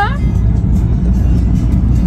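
Steady low road and engine rumble inside a moving car's cabin, with background music.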